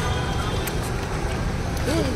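Busy outdoor bustle: a steady low rumble like road traffic under a crowd's chatter, with a voice briefly near the end.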